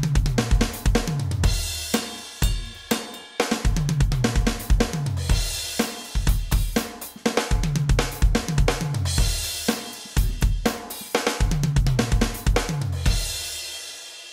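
Drumtec Diabolo electronic drum kit played: right-left-kick linear fills moved around the toms, stepping down in pitch with the kick between them, repeated over and over with several cymbal crashes. The playing stops shortly before the end.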